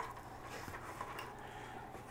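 Quiet room tone with a few faint light ticks and rubs from a plastic bucket being turned over in the hands.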